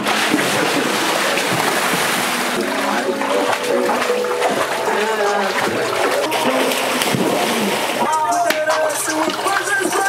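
Water splashing and sloshing in an above-ground pool as people jump in and wade about, with voices over it. About eight seconds in the splashing eases and the voices come to the fore.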